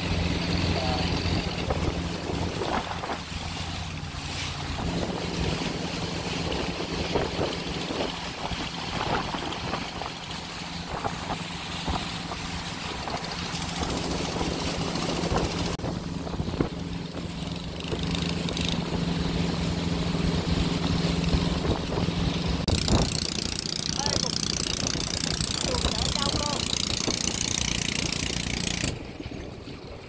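A small boat's engine running steadily under way, with water rushing past the hull. About 23 seconds in, a louder rushing hiss joins, and the sound drops away shortly before the end.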